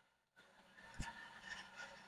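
Very faint handling sounds with one short click about a second in, from scissors trimming loose threads off a sewn fabric shirt.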